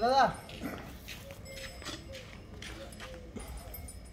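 A Gir calf's short bawl right at the start, rising then falling in pitch. After it, soft, short swishes of milk squirting into the bucket by hand, about two or three a second.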